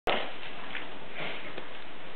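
A sharp click as the recording starts, then a steady, even hiss of room noise and recording hiss.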